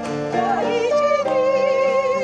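Live amateur band playing a slow song: strummed acoustic guitar under a sung melody with a wide vibrato, with a small wind instrument holding steady notes above it.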